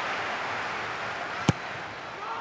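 Football stadium crowd noise, a steady hum slowly fading, broken by a single sharp thud about a second and a half in, fitting the ball being struck as the corner kick is taken.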